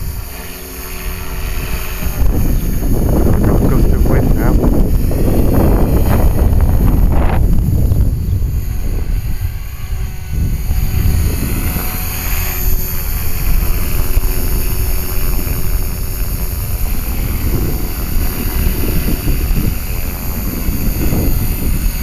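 Electric HK-450 RC helicopter (a T-Rex 450 clone) in flight: the main rotor whirring with the electric motor's whine, under heavy wind buffeting on the microphone.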